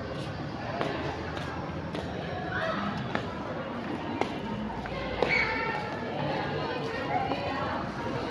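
Indistinct voices of people talking nearby, with a few light knocks, roughly one a second.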